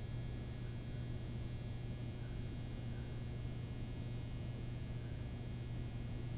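Steady low electrical hum with a faint, even high whine and hiss: the room tone of the gym, with no events.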